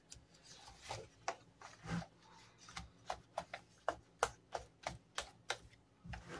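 Pages of a discbound planner being pressed onto its binding discs: a run of small, sharp clicks and snaps, faint and irregular, two or three a second.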